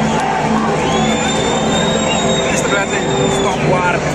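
Large stadium crowd with many voices at once, steady and loud. A high, steady whistle note is held for about two and a half seconds, starting about a second in.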